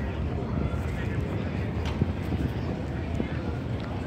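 Outdoor ambience: a steady low rumble of wind on the microphone, with faint voices of people around and a few light clicks.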